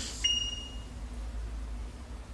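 A single short, high-pitched ding about a quarter of a second in: two clear tones that die away within about half a second, over a low steady hum.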